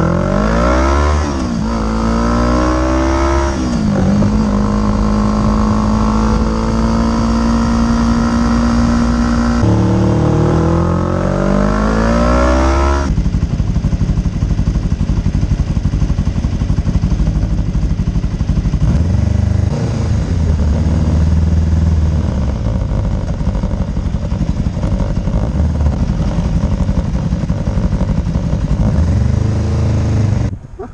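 Motorcycle engine under way. It revs up with the pitch falling back at each gear change over the first few seconds, holds a steady pitch while cruising, and rises again. From about thirteen seconds in, a steady rush of wind and road noise covers most of the engine.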